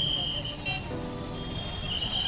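Busy street traffic: engines and crowd noise under a high steady tone that stops about half a second in and returns near the end, with a short high toot in between.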